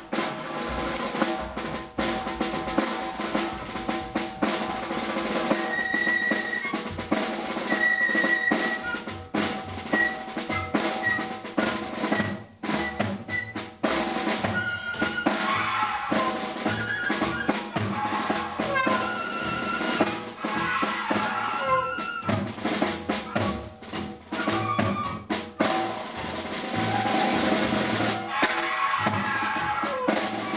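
Instrumental music with a busy drum kit, a bass line stepping from note to note, and short melodic notes above.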